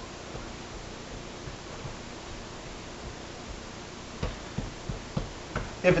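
Hands pressing biscuit dough together on a silicone baking mat on a countertop: faint room hiss at first, then a handful of soft, dull thumps in the last two seconds.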